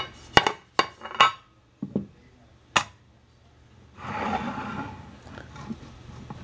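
A handful of sharp clinks and knocks from hard objects being handled, four in quick succession at the start, then two more spaced out, each ringing briefly; about four seconds in comes a short soft rustle.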